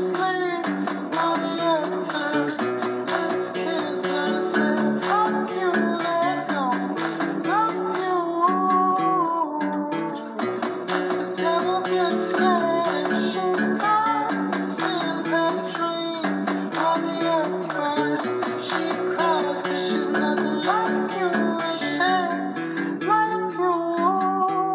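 Cutaway acoustic guitar played in a song: picked melody notes with slides over moving bass notes.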